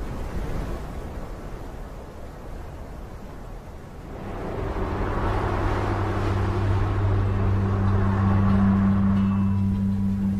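A steady wind-like hiss. From about four seconds in, background music swells in over it, carried by a sustained low drone that grows louder.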